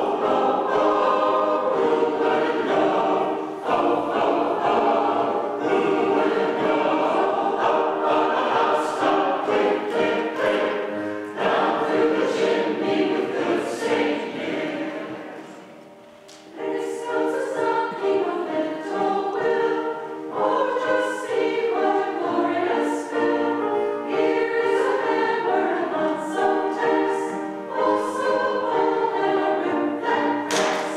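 Mixed choir of men's and women's voices singing a Christmas song together; the singing dies away about halfway through, then starts again a second or so later.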